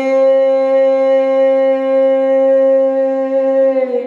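A man's voice holding one long, steady sung note in a Bhatiyali folk song, the drawn-out note typical of that boatman's song style; it ends shortly before four seconds in.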